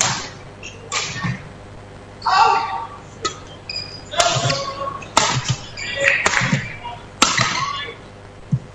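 Badminton rally: a shuttlecock struck back and forth by rackets, sharp hits coming about a second apart and ringing in a large hall, with voices in between.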